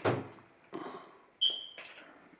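Refrigerator door being pulled open: a solid thud at the start, softer knocks, and a sharp knock about one and a half seconds in followed by a brief high-pitched tone.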